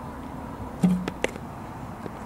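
A softball bat strikes the ball a little under a second in, a sharp crack with a brief low ring, followed quickly by two lighter knocks.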